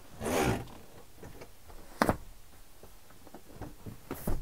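Scopema Altair folding van bench being lifted from its bed position back up into a seat: a rustling swish of the padded backrest as it swings up, then one sharp click of the seat mechanism about halfway through, with a few faint ticks after.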